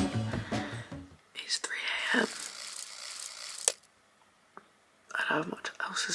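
Background music that stops about a second in, then a woman's hushed, whispering voice, a short silence, and her voice again near the end.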